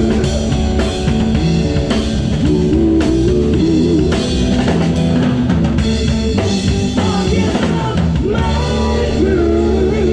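Live rock band playing a song, with electric guitars over a steady drum-kit beat and a melodic line that bends in pitch.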